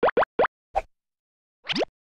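Cartoon pop sound effects on an animated logo: four quick bloops rising in pitch in the first half second, a softer pop, then one longer rising bloop near the end.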